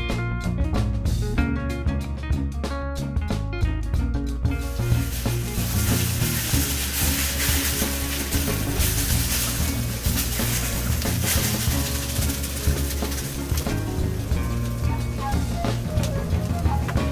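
Background music with a steady drum beat. From about four seconds in, oil and potato peels sizzle loudly in a frying pan on high heat while the pan is being seasoned with oil, peels and salt.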